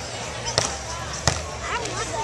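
A beach volleyball struck by hand twice during a rally, two sharp smacks about 0.7 s apart, over faint crowd voices.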